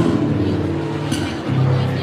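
Malambo accompaniment music with sustained guitar chords. Sharp percussive strikes land at the start and again about a second in.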